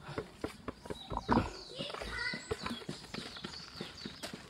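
Footsteps on a dirt park path, scattered short knocks. A person's voice is heard briefly about two seconds in.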